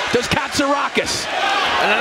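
English television commentary on a professional boxing bout, with gloved punches landing as sharp thuds among the words.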